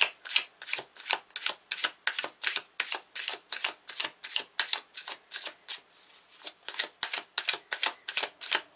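A deck of oracle cards being shuffled by hand: a quick, regular series of crisp card slaps, about four a second, with a short lull about six seconds in.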